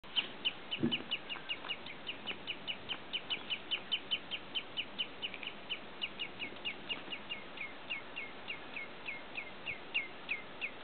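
Common redshanks calling during a fight: a long, fast series of short, downslurred piping notes, about four or five a second, easing slightly toward the end.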